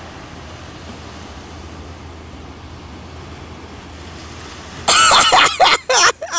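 Steady beach wind and surf noise on the microphone. About five seconds in comes a sudden loud human cry with a wavering pitch, lasting just over a second.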